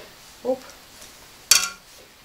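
A single sharp clink of a metal ladle against the soup pot as borscht is ladled into a bowl, with a short ringing tail.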